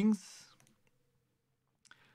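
The tail of a spoken word, then a pause broken by one short, sharp click near the end.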